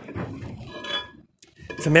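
Galvanised steel base plate with four L-bolts and their nuts clinking and rattling as it is handled and turned over, with a brief faint metallic ring about a second in.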